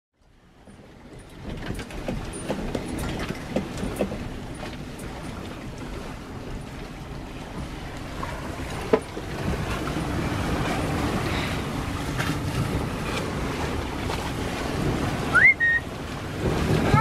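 Wind and waves rushing around a small sailboat sailing close-hauled in 15 to 20 knots of wind, with wind buffeting the microphone and scattered short knocks. The sound fades in over the first two seconds.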